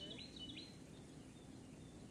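Faint bird song: a quick run of high chirps in the first second, over a low, steady outdoor background hush.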